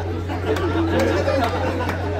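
Indistinct chatter of several voices from players and onlookers around a football pitch, with a few short, sharp knocks and a steady low hum underneath.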